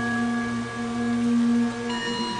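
Steady musical drone of several held tones, the accompaniment to a chanted Sanskrit mantra.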